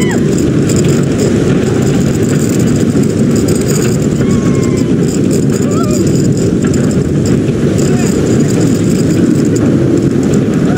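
Steady loud roar of wind and the train's wheels on the steel track, heard from on board a moving roller coaster. A few brief faint rider voices rise above it.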